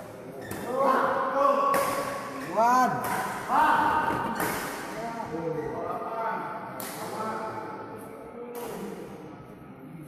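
Badminton being played: a string of sharp racket hits on the shuttlecock, irregularly spaced and most frequent in the first half, with short pitched squeaks or calls from the players in between.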